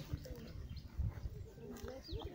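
People talking indistinctly in the background, with low irregular thumps.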